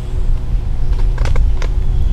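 A few sharp clicks and knocks about a second in as an aluminium Hawk Helium climbing stick, lashed to a tree trunk with an Amsteel rope daisy chain, takes a person's full weight and bites into the bark. A steady low rumble runs under it throughout.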